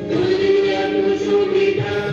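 A group of voices singing together in chorus, with long held notes.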